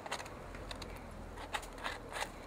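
A blunt knife scraping boiled meat and skin off a deer skull: a few faint, short scratches and clicks of the blade on bone.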